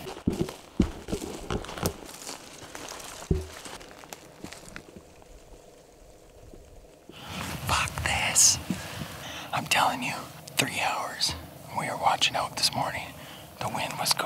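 Footsteps crunching and clicking on the forest floor, with backpack gear rustling, for the first few seconds. From about halfway on, a man talks in a whisper.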